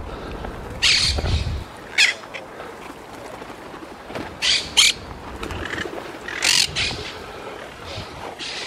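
Parakeets squawking: about half a dozen short, harsh calls, some in quick pairs, over the steady rustle and wing flapping of a dense flock of feral pigeons feeding.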